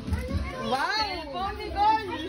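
Children's excited voices: a high exclamation rising and falling in pitch about a second in, with more chatter near the end.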